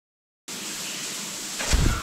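Complete silence for about half a second, then a steady rushing hiss, with a dull low thump near the end.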